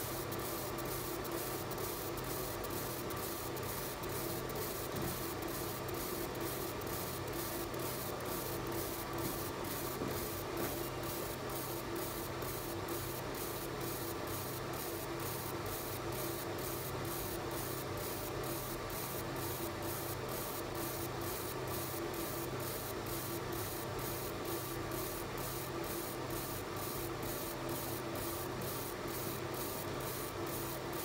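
BCX fiber laser marking machine engraving a photo onto stainless steel: a steady machine hum under a fine hiss that pulses regularly, about twice a second, as the beam scans the picture line by line.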